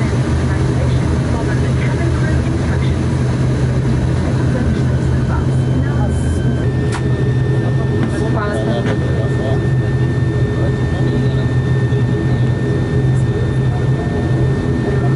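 ATR 72-600's Pratt & Whitney PW127 turboprop engines and propellers running while the aircraft taxis, heard inside the cabin as a loud, steady low drone. A thin, steady high tone joins about halfway through.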